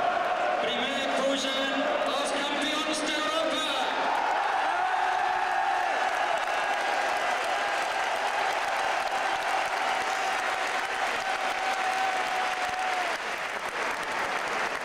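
Large football stadium crowd noise: a steady roar with voices shouting and chanting close by, then a single steady note held for about nine seconds over the roar from about four seconds in.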